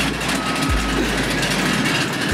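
Steady rush of aircraft and ground-vehicle engine noise on an airport apron, with a faint high whistle. A deep bass note of background music comes in under it less than a second in.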